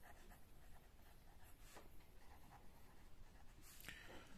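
Faint scratching of a pen writing on ruled notebook paper, in a few short irregular strokes.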